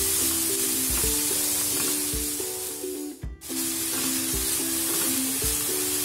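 Chopped onions sizzling in ghee in a kadai, stirred with a silicone spatula as they fry toward golden, with light background music playing over it. The sound briefly drops out about halfway through.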